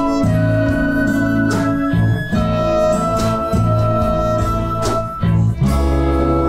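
Instrumental passage of a ballad with a string orchestra: violins and cellos hold chords that change every second or two over a steady bass line, with no singing.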